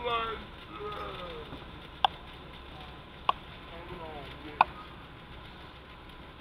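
Three sharp firecracker pops, evenly spaced about a second and a half apart, over faint voices.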